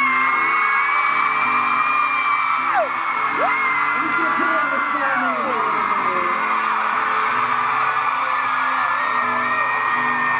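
Acoustic guitar strumming a steady chord pattern, with long high-pitched whoops and screams from the audience held over it, falling away about 3 and 5 seconds in and starting again near the end.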